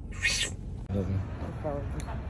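A short hiss, then a few brief, wavering voice sounds from a person that are not clear words.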